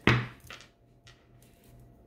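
A single sharp knock of a tarot card deck against a wooden tabletop as it is picked up, dying away quickly, followed by a faint tick or two of card handling.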